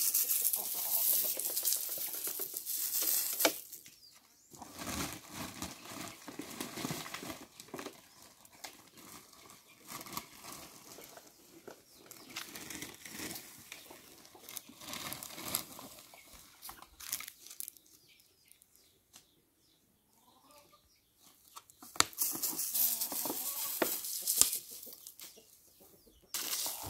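Powdered protein salt poured from a sack onto a pile of dry chopped sugarcane and grass forage, a hissing pour at the start and again near the end. In between, the dry chopped forage rustles and crackles irregularly as it is mixed.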